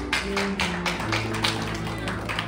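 Keyboard music: sustained chords over low bass notes that step from one to the next, with sharp percussive taps about three times a second.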